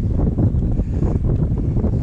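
Strong wind buffeting the microphone: a loud, steady low rumble.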